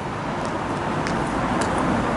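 Street traffic noise: a steady rush of a car passing on the road, with a few faint ticks.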